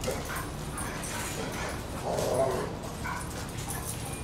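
Two dogs playing together, making short vocal sounds. The loudest comes about two seconds in.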